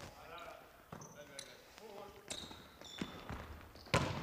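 Volleyball rally on a hardwood gym court: a few faint hand contacts on the ball, then one sharp, loud hit near the end as the ball is spiked at the block at the net.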